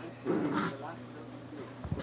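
A small dog gives one short vocal sound, a brief bark, about a quarter second in, over steady television speech in the background.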